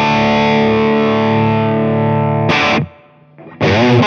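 Distorted electric guitar (PRS Hollowbody) through the Orange Rockerverb 50 Mk III's dirty channel, recorded direct: a chord is left to ring steadily, then a short strum cuts off into a brief gap. About three and a half seconds in, playing resumes with moving notes on a higher-gain setting with spring reverb.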